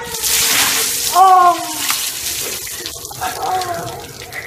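Bucket of ice water splashing down over a seated man for about two seconds. About a second in he lets out a loud cry, and near the end a shorter, fainter vocal sound as he laughs.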